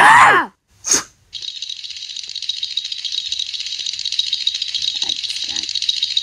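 Cartoon sound effects: a loud, short pitched cry that bends in pitch, a brief second burst about a second later, then a steady high hissing rattle that starts about a second and a half in and carries on.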